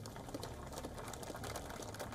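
Faint low hum with rapid, light crackling clicks.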